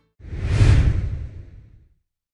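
A whoosh sound effect marking the logo reveal at the end of a video. It is a deep, noisy swell that begins a fraction of a second in, peaks just before a second, and fades away by about two seconds.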